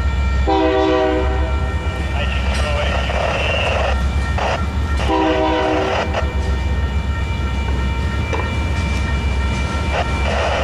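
A freight train of tank cars and covered hoppers rolling past with a steady low rumble. Over it, a train horn sounds two short blasts, one about half a second in and one about five seconds in.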